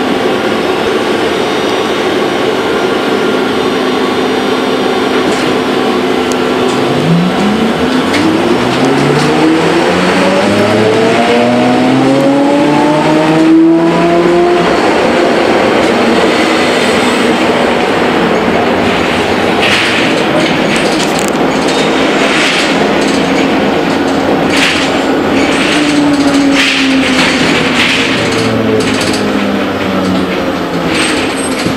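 Ikarus 280 trolleybus heard from inside while driving: the electric drive's whine rises in pitch as the bus speeds up about a quarter of the way in, holds, and falls again near the end as it slows. Under it run a steady hum, road noise and body rattles, with sharp clicks in the second half.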